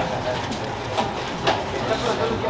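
A few short knocks and clicks of ice and a straw against a plastic cup as an iced drink is sipped and then stirred.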